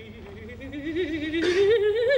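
A contralto sings a slow rising operatic phrase with a wide vibrato, climbing steadily from a low note to about an octave higher. A brief hissed consonant comes about a second and a half in.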